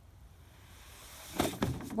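A small child sliding down a plastic toddler slide: a rubbing swish that builds over about a second, then a few knocks and a bump as she reaches the bottom and steps off.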